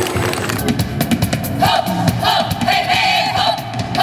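Women's folk ensemble singing a lively Russian folk song in high voices over a fast, rhythmic musical beat; the voices come in about one and a half seconds in.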